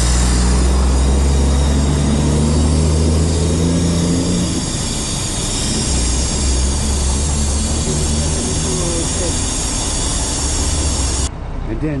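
Compressed air hissing loudly from a dump truck's air brake chamber, over the truck's engine idling; the hiss cuts off suddenly near the end. The chamber is gone: its rubber diaphragm has failed and leaks air when the brake is applied.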